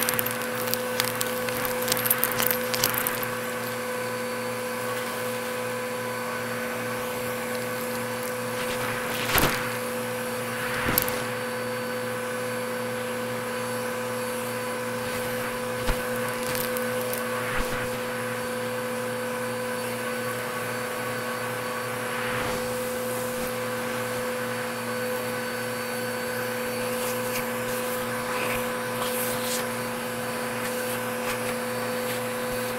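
Bissell vacuum cleaner running with a steady hum, sucking up debris from carpet with short crunching crackles, a cluster in the first three seconds and a few more single crunches around the middle.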